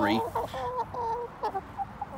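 Hens clucking: a quick run of short clucks, several a second, that thins out after about a second and a half.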